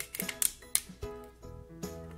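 Background music with several irregular sharp clicks and crackles from a clear plastic sheet as cured soft resin pieces are peeled off it.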